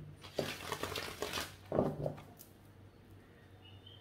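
A deck of tarot cards being handled between shuffles: a run of light clicks and taps of the cards for about the first second and a half, then much quieter.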